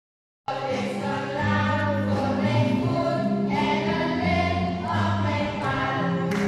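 Children's choir singing together, led by adult women's voices, starting about half a second in and going on steadily with long held notes.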